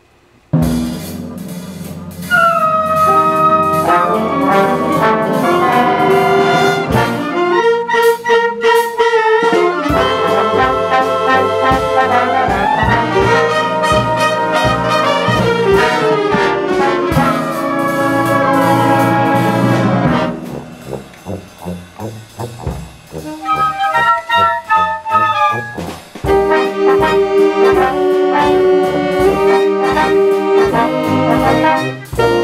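Community concert band starting a big-band jazz medley, brass to the fore: a soft entry about half a second in, swelling to the full band about two seconds in. About two thirds of the way through it drops to short, quieter stabbed notes before the full band comes back in.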